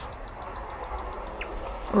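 Morning outdoor ambience: a soft even hiss with a quick run of faint ticks in the first second and one short high bird chirp about halfway through.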